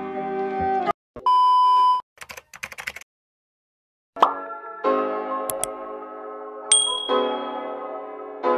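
Intro music cuts off about a second in, followed by a steady electronic beep lasting under a second and a quick run of keyboard-like clicks. After about a second of silence, music starts again with a sharp hit and carries on under a short bright ding near the end.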